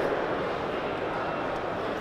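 Steady background noise of a large hall in a brief pause between words, with no distinct event.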